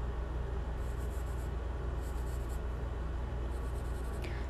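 Charcoal pencil scratching on drawing paper in repeated shading strokes, darkening a shadow area, in a few short spells. A steady low hum runs underneath.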